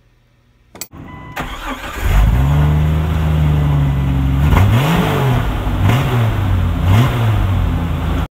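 A car engine starts about two seconds in, runs steadily, then is revved in three short blips, each rising and falling in pitch.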